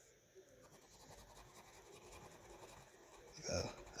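Faint, steady scratching of a Crayola wax crayon colouring in a small square on paper, then a short "uh" near the end.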